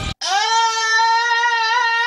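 A person's long, high scream held on one open vowel, its pitch creeping slightly upward. It cuts in suddenly after a split second of silence.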